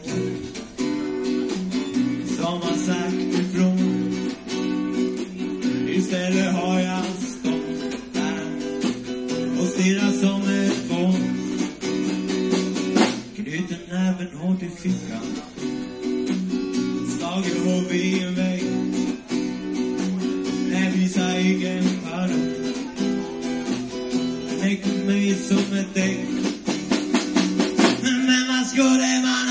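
A live band playing a song with strummed guitar to the fore, recorded on a portable cassette recorder with a microphone among the audience.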